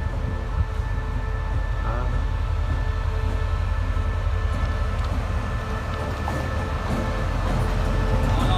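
Two coupled SRT QSY (CRRC Qishuyan) diesel-electric locomotives approaching slowly: a steady diesel rumble with several steady tones above it, growing louder as the engines draw close.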